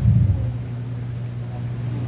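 A steady low hum runs through a pause in the preaching, with a brief low thump right at the start.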